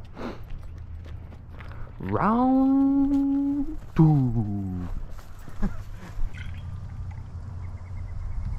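A man's voice holding one long wordless sung note, rising into it about two seconds in, then a second note that slides downward around four seconds in. A steady low rumble runs underneath.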